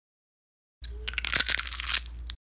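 Short crunching, scratchy sound effect with the intro logo, lasting about a second and a half over a low hum; it starts just under a second in and cuts off abruptly.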